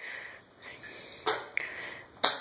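Armpit fart: a hand cupped and pumped against a wet armpit, giving one short squelching burst a little past halfway.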